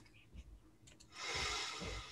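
Near silence, then a soft breathy hiss lasting about a second, like a breath into a headset microphone.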